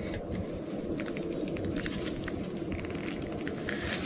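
Dry grass rustling and crackling, with light handling and clothing noise, as someone crouches and works in it. It is a steady low rustle with scattered faint ticks.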